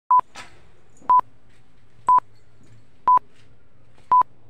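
Electronic timer beeping: short, single-pitched beeps, one each second, four in all.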